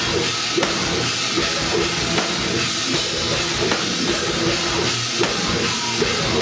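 Live metal band playing loud: guitars over a drum kit with bass drum and cymbals, in a steady, heavy rhythm.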